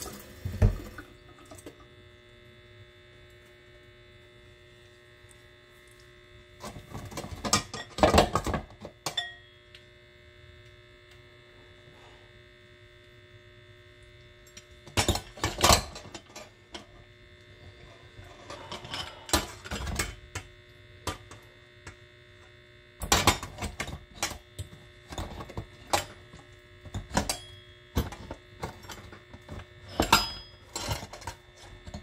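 Hand-cranked stainless steel food mill straining tomatoes: spells of quick metal scraping strokes as the crank is turned, a few short spells spaced apart and then near-continuous cranking over the last several seconds, over a steady faint hum.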